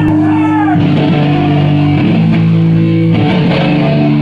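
Live punk rock band playing loud distorted electric guitar and bass chords with drums, the chord changing about once a second.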